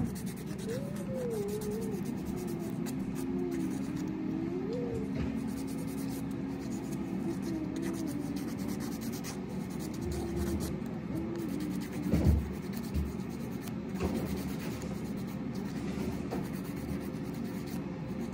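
A nail file rasping back and forth across a fingernail, a run of short scratchy strokes, filing the natural nail down. A brief knock comes about twelve seconds in.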